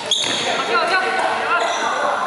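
Court shoes squeaking and footfalls on a wooden badminton court in a large echoing hall. A sharp high squeak comes just after the start, and shorter wavering squeaks come about a second in.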